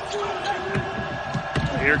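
A basketball being dribbled on a hardwood court, with sneakers squeaking on the floor.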